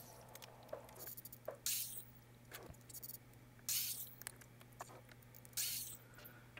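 Faint handling sounds of lumber at a miter saw: a few short scrapes and rustles about two seconds apart as boards are moved on the saw table, over a steady low hum. The saw itself is not running.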